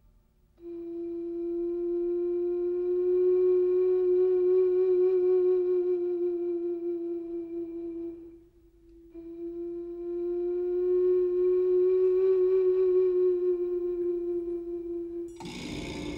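Soundtrack music: a wind instrument like a flute holds two long notes on the same pitch, each about seven seconds, with a brief break between them. Just before the end a louder, brighter burst of music comes in suddenly.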